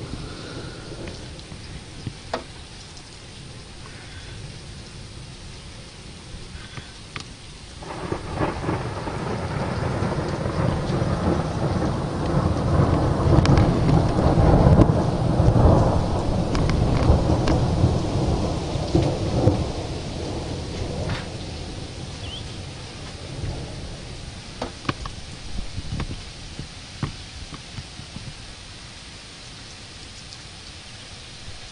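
Rolling thunder from a distant lightning strike swells about eight seconds in, rumbles loudest around the middle and dies away over several seconds. Steady rain runs underneath, with occasional sharp taps.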